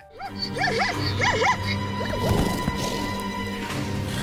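Background music under the calls of fighting Grevy's zebras: a run of rising-and-falling squealing cries in the first second and a half, then a few thuds a little over two seconds in.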